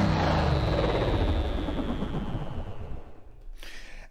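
Tail of an electronic music sting: a noisy whoosh with a slightly falling high tone, fading out over about three seconds.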